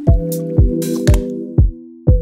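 Instrumental hip-hop beat at 120 BPM: a kick drum on every beat, about two a second, under sustained chords, with snare or hi-hat hits between. The drums drop out briefly near the end, leaving only a low held tone.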